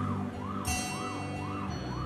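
Police vehicle siren sounding a fast up-and-down yelp, about three rises and falls a second, over a low steady hum.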